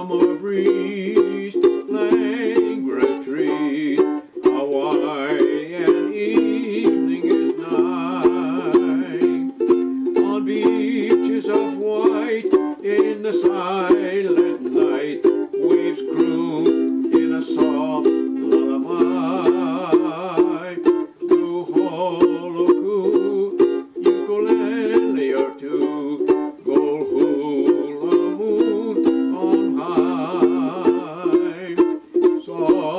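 Ukulele strummed in steady, evenly spaced chord strokes, playing a slow waltz in the key of F.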